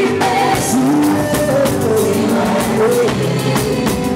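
Gospel choir singing over live band accompaniment with a steady drumbeat.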